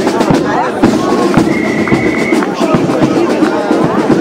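Band music with drumming, mixed with the chatter of a large crowd; a held note sounds briefly in the middle.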